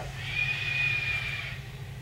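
A long audible exhale, a breathy rush with a thin whistling tone in it, lasting about a second and a half.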